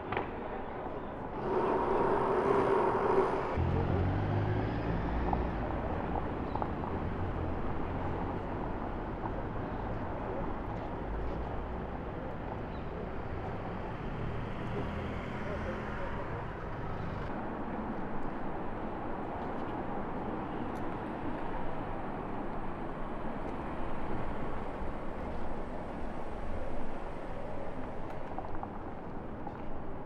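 City street ambience: steady traffic noise and the low rumble of passing vehicles, with people's voices in the background and a louder burst about two seconds in.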